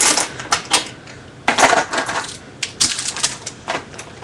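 Lipstick tubes and eyeshadow compacts clicking and clattering as they are handled: a string of irregular sharp clicks, with a denser clatter about a second and a half in.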